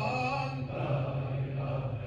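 A single voice chanting a long held, slightly wavering note that ends about half a second in, its echo dying away as fainter phrases follow, over a steady low hum.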